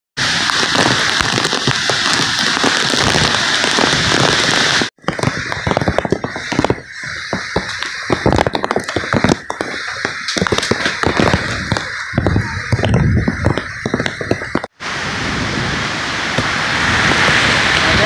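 Typhoon wind and heavy rain rushing and buffeting against a phone microphone. In the middle stretch the rush turns uneven, with many irregular sharp cracks and knocks, and near the end it settles into an even roar of rain.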